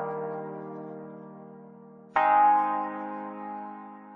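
Chord progression playing back on an AAS Player software-synth preset: sustained multi-note chords, a new one struck about two seconds in, each ringing on and fading.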